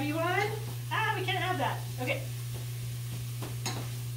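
Food frying in oil in a pan, with a few clicks of a utensil stirring and a woman's murmured voice in the first two seconds. A steady low hum runs underneath.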